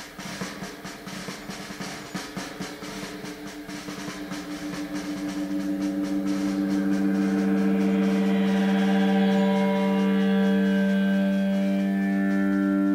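Instrumental ending of a late-1960s psychedelic rock song: rapid drumming, like a drum roll, fades over the first half while a sustained chord swells in and holds.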